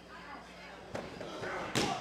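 A single heavy impact thud in a wrestling ring near the end: a wrestler's blow landing on his downed opponent.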